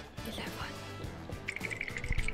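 Background music under a single softly spoken word, with a rapidly pulsing high tone coming in about a second and a half in.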